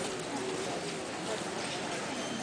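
Crowd of spectators at an indoor horse show: a steady murmur of many voices talking at once.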